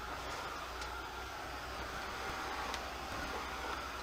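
Handheld craft dryer running steadily as it blows over freshly sprayed ink on paper to dry it: a not super loud, even whir with a faint high whine.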